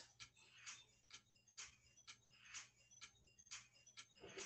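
Near silence with faint, even ticking, about two ticks a second.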